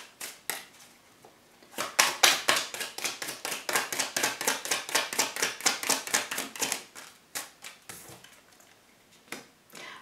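Tarot deck being shuffled by hand: a rapid run of card slaps, several a second, for about five seconds. A few single soft taps near the end as a card is drawn and laid on the table.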